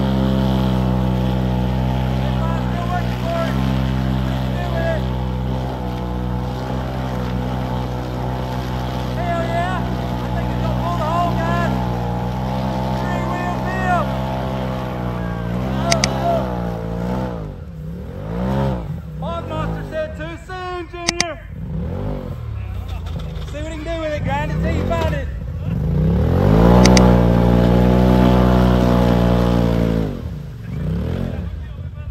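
Side-by-side UTV engine held at high revs as the machine churns through deep mud on mud tires. About halfway through it starts revving up and down several times, then climbs to a long, loud high-rev pull near the end.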